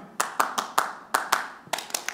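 Hand claps in a quick rhythmic pattern, about ten sharp claps in two seconds: a call-and-response clapping rhythm of the kind teachers use to get children quiet and listening.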